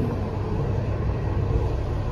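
City bus running, heard from inside the passenger cabin: a steady low rumble of engine and road.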